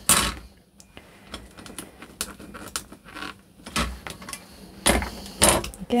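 Knocks and clicks of a rotating stamp platform and its parts being handled on a tabletop: a sharp knock at the start, quiet paper handling, then a few more knocks near the end.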